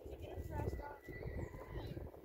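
A horse whinnying, a wavering high call that runs on through most of the two seconds.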